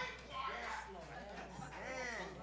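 Faint, indistinct voices with a wavering pitch, over a steady low hum.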